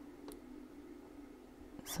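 Quiet room tone with a faint steady hum and a single soft tick about a third of a second in.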